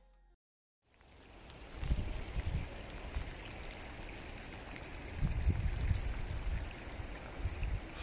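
Wet, windy outdoor ambience: a steady hiss of rain and water, with gusts of wind rumbling on the microphone. It fades in after a brief silence about a second in.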